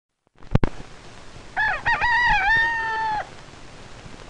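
A single rooster crow lasting about a second and a half, wavering at first and then held before it drops off, on an old optical film soundtrack with steady hiss. A sharp click comes about half a second in. A crowing rooster was the trademark sound at the opening of Pathé films.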